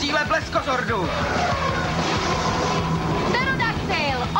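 Television action-scene sound effects: a string of quick gliding electronic sweeps, then a steady held tone, then a cluster of warbling chirps near the end.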